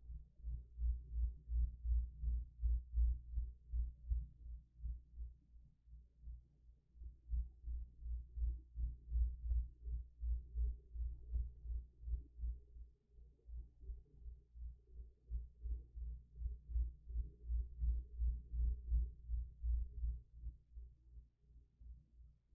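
A low, fast throbbing pulse, about four to five beats a second, swelling and fading in loudness every few seconds.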